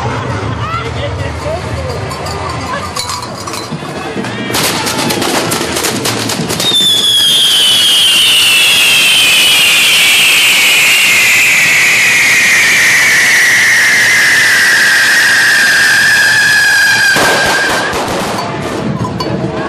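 Correfoc fireworks spraying sparks: a burst of rapid crackling about four seconds in, then one long, loud whistle that slides slowly down in pitch for about ten seconds and stops shortly before the end.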